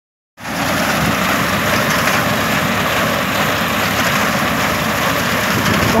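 Tractor running with a mounted reaper cutting standing wheat: a steady, dense, crackling noise with a low rumble that starts suddenly about half a second in.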